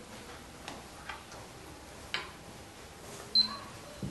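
A few light clicks, then one louder, sharp click with a brief high ring near the end.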